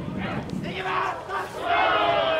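Football team in a huddle shouting a team cheer together, building to a long group shout near the end that slides down in pitch.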